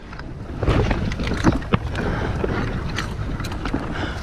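Wind buffeting the microphone of a camera worn up in a palm tree, with close rustling of palm fronds and a few sharp knocks, around one and two seconds in, as the climber moves among them.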